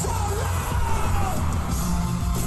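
Live band concert music, with a steady heavy bass and a vocal line over it.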